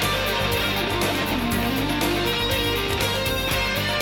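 Pop-rock band recording in an instrumental passage with no vocals: electric guitar over bass and a steady drum beat.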